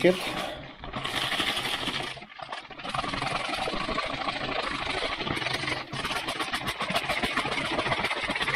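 Vodka and potash (potassium carbonate) sloshing and churning inside a plastic soda bottle as it is shaken hard by hand, speeding the potash's reaction with the water. The shaking starts just after a second in, breaks off briefly about two seconds in, then runs on steadily.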